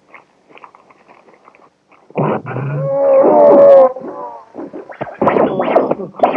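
Several voices yelling and whooping together on a worn old film soundtrack. It comes in loud about two seconds in after a faint, crackly start, dips, and swells again near the end.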